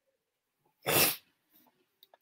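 A single short, sharp breath noise from a man, about a second in.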